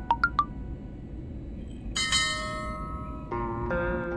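Added soundtrack: three quick high chimes at the very start, a single ringing bell-like tone about halfway through, then a plucked-guitar music track begins near the end, all over a low steady rumble.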